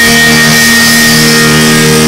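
Live rock band's electric guitars holding one sustained chord, very loud and steady, with no drum hits.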